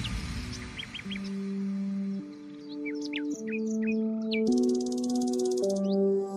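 Background music: slow sustained synth chords that change every second or so, with short bird-like chirps laid over them and a brief buzzy texture near the end.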